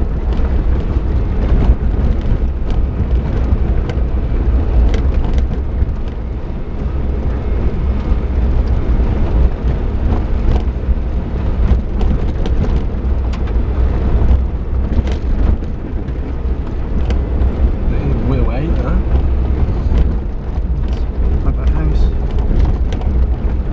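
Suzuki Jimny heard from inside the cabin while driving slowly over a rough gravel track: a steady low engine and tyre rumble with frequent knocks and rattles as it rides over stones and bumps.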